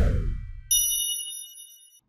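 Animated logo sting sound effect: a downward whoosh with a low rumble, then a bright bell-like ding about two-thirds of a second in that rings on and fades away.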